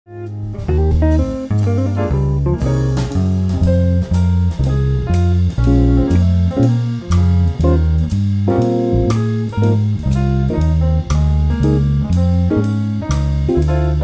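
Electric bass playing a jazz-blues walking bass line, one evenly spaced note per beat, over a backing band with drums and an electric guitar soloing.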